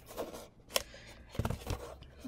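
A few faint clicks and light knocks as a small 9-watt gel-curing UV nail lamp is handled and switched on at its on/off switch on the back.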